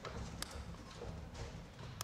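Quick footsteps on a hard floor, a few sharp taps over a low steady hum.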